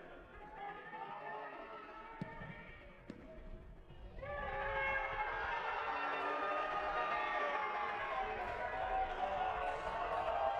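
Music comes in about four seconds in and carries on loudly. Before it there are quieter sounds and two short sharp clicks.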